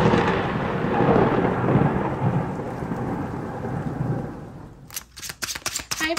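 A rumbling, rain-like wash of noise that fades away over about five seconds. Near the end comes a quick run of sharp clicks from tarot cards being shuffled.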